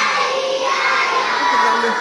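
A large group of young children shouting out a song together in unison, loud, their voices holding and stepping between notes.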